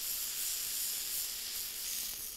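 Ground chicken patty sizzling in oil on a hot flat-top griddle while a metal spatula presses it down: a steady, high hiss.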